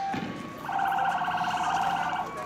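Police vehicle's electronic siren sounding a rapidly pulsing tone at one steady pitch, starting a little over half a second in and lasting about a second and a half. A brief thump comes right at the start.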